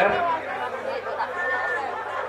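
Background chatter of several people's voices in a crowd.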